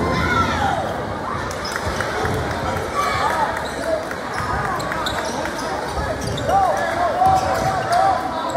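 Basketball being dribbled on a hardwood gym floor, with crowd chatter and shouts echoing through a large gym.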